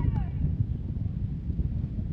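Wind rumbling on the microphone, with faint distant voices of players briefly at the start.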